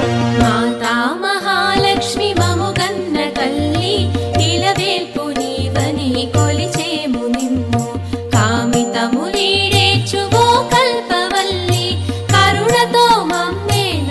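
Carnatic-style Hindu devotional music: a wavering, ornamented melody line over a sustained drone and a steady low percussion beat.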